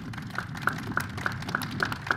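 Applause: one nearby pair of hands clapping steadily, about three claps a second, over fainter scattered clapping.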